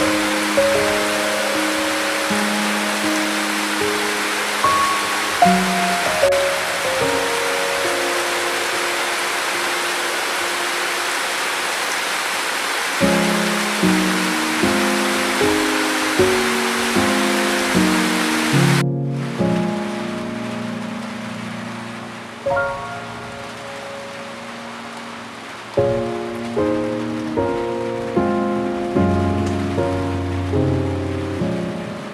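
Calm piano music, its notes ringing and fading one after another, over a steady hiss of rain. About two-thirds of the way through, the rain's hiss drops suddenly to a softer, duller rain.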